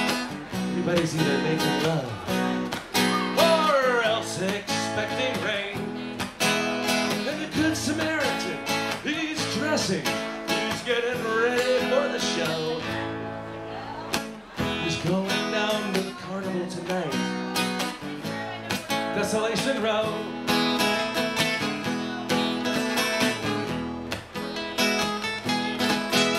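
Two acoustic guitars playing live, chords strummed and picked through an instrumental break, with a melody line that slides and wavers in pitch over the chords a few seconds in and again around the middle.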